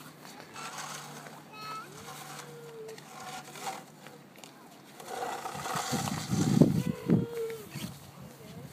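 Small children's wordless voices: short calls and a gliding squeal, then a louder, drawn-out call about five and a half to seven and a half seconds in.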